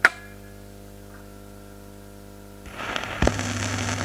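Vintage record player's amplifier humming steadily, with one sharp click right at the start. Near the three-second mark the stylus meets the record, and surface hiss and crackle from the lead-in groove set in, with a pop.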